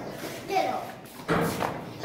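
Children's voices with a sudden thump about a second and a half in.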